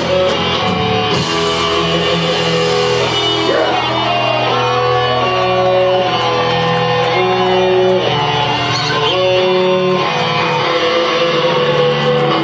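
Live band playing: electric guitars and bass guitar holding long notes that change every second or two, with a few bent notes a few seconds in.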